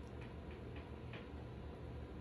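Kitten purring faintly and steadily while its chin is scratched, with four soft ticks in the first second or so.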